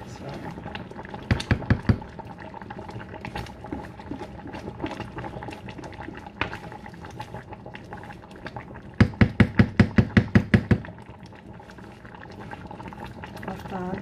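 A large pot of egusi soup simmering on the stove, bubbling and popping steadily. Two bursts of rapid, evenly spaced knocking stand out above it: a short run of about five knocks a second in, and a longer run of about a dozen near the ten-second mark.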